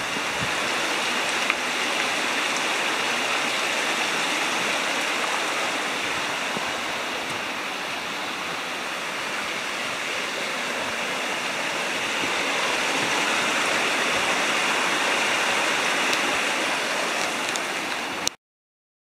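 Steady rush of a small stream tumbling over rocks, getting a little louder in the last few seconds.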